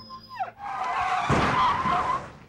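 Car tyres screeching in a hard skid, starting about half a second in and lasting about a second and a half.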